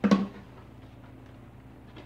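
A single short plastic knock from handling a canister vacuum cleaner's dust container and cyclone parts, ringing briefly, then a faint steady low hum of room tone.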